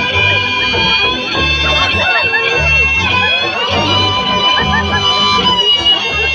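Live band music played loud through a PA: acoustic guitars over a regular bass pulse, with a steady high held tone and voices bending in pitch above them.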